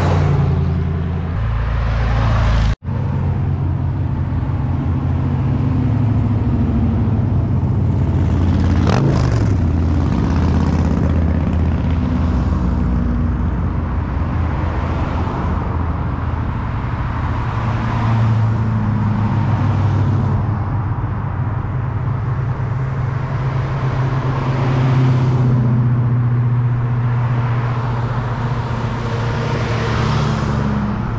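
Classic and muscle car engines running with low notes as the cars drive past one after another, each one swelling and fading as it goes by. One passes close about nine seconds in with a falling pitch. The sound cuts out briefly near three seconds in.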